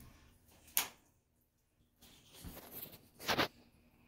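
A quiet room with one sharp click about a second in and a brief louder noise a little after three seconds in.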